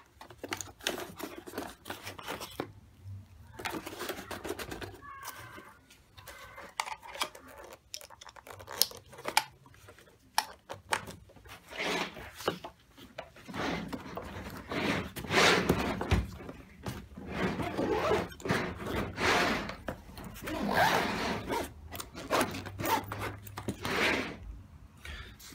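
Handling noise of a drone and its cables being packed into a foam-lined hard-shell backpack: rustles, scrapes and light knocks. Longer scraping passes follow in the second half, ending with the case's zipper being pulled.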